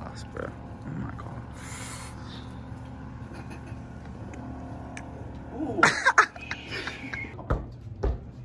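Steady low machine hum, a short burst of voices around six seconds, then dull thuds of a soccer ball being juggled near the end.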